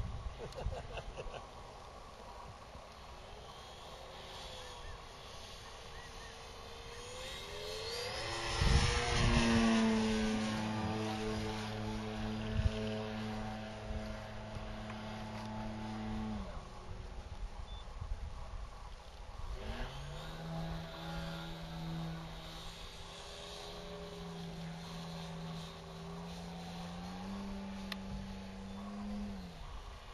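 Engine of a radio-controlled Pitts Model 12 biplane in flight. Its note rises as the throttle opens about eight seconds in, loudest around nine seconds, then holds steady before dropping away. It comes back at a lower steady pitch, steps up briefly, then falls to idle just before the end, quiet enough to sound as if it had stalled.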